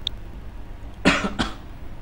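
A person coughs twice in quick succession about a second in, the first cough the louder. A light mouse click comes near the start.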